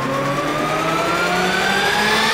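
An engine-like revving sound effect, its whine rising steadily in pitch.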